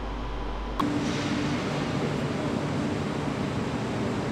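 Steady hum of a commuter train standing at a station platform: an even noise with a low, steady drone, starting abruptly about a second in.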